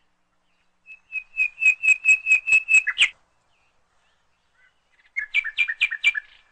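Bird chirping: a quick run of about nine chirps, four or five a second, then after a pause of about two seconds a second run near the end.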